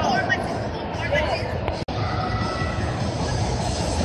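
Indistinct crowd chatter and the general din of a large indoor sports hall, with a steady low hum. The sound drops out for an instant a little under two seconds in, where the recording cuts.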